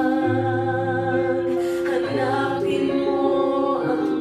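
A slow hymn sung with instrumental accompaniment, played from a television: long held notes and chords that change every second or two over a sustained bass.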